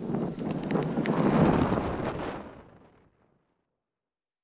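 A rushing burst of wind noise on the microphone, with scattered clicks, swelling and then fading out about three seconds in.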